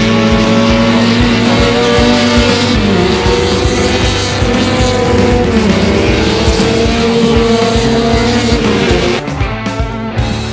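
Touring race car engines running hard on track, their pitch dipping and climbing, mixed under rock music with a steady drum beat.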